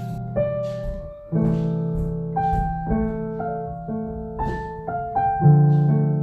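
Background piano music: a slow melody of single notes over held low chords.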